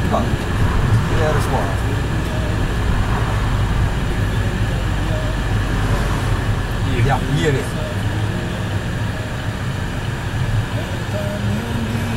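Car interior noise while driving: a steady low rumble of engine and tyres on the road, heard inside the cabin.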